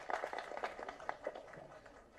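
Audience applause after a speech, thinning out and dying away over the first second and a half.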